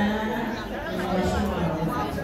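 Speech: a voice talking, with other voices chattering.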